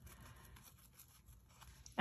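Faint rustling of metallic mesh ribbon being pushed together by hand.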